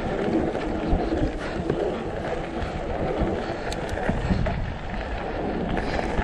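Mountain bike rolling fast over a loose gravel and stone track: a steady rough noise of tyres on gravel with small rattles and knocks from the bike, mixed with wind on the microphone.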